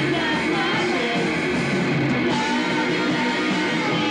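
Live punk rock band playing at a steady, loud level: electric guitar with sung vocals over it.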